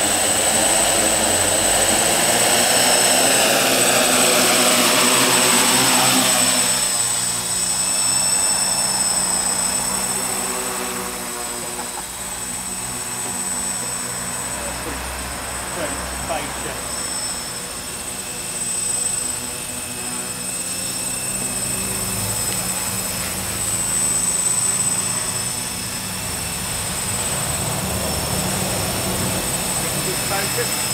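Xaircraft X650 quadcopter's electric motors and propellers buzzing in flight. The pitch wavers as the throttle changes. It is loudest over the first several seconds, where the whine falls in pitch, then steadier and a little quieter.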